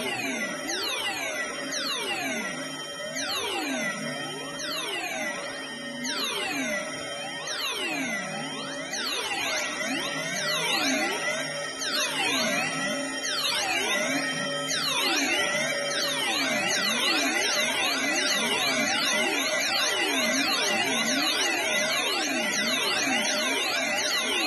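Electronic drone music from a Behringer Edge semi-modular synthesizer run through an effects pedal: dense, overlapping swooping pitch glides that dip and rise over a few steady held tones, growing somewhat louder about halfway through.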